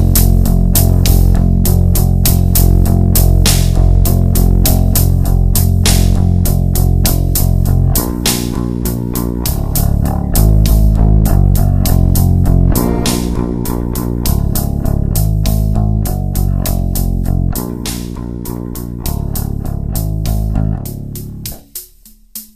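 Instrumental experimental rock: bass guitar and electric guitar playing together. The low bass line changes pattern about eight seconds in, and the music drops away just before the end.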